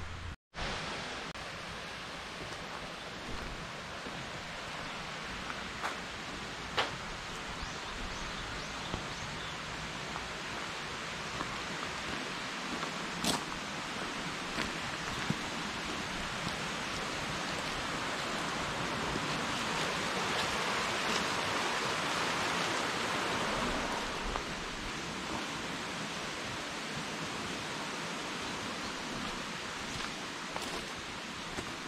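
Steady outdoor background hiss in woodland, swelling slightly in the middle, with a few sharp clicks. The sound cuts out for an instant just after the start.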